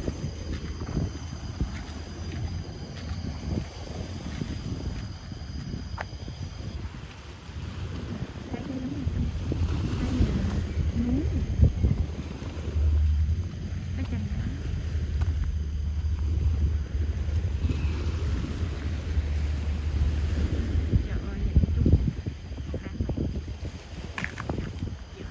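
Wind buffeting the microphone on a breezy seafront, with a heavy low rumble through most of the middle stretch, over faint open-air background noise.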